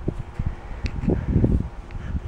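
Irregular low thumps and rumble from a hand-held camera being carried and swung around: handling noise and wind on the microphone, with a couple of faint clicks.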